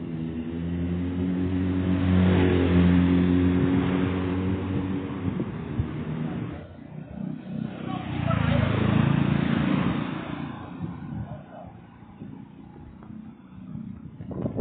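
Motor vehicles passing close by on the road. The first has a steady engine note and is loudest about two to four seconds in. A second passes about eight to ten seconds in, mostly as road noise.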